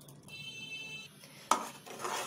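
A metal spoon knocks once against the aluminium pot with a sharp clank about one and a half seconds in, the loudest sound. Before it, a faint high ringing tone sounds for under a second.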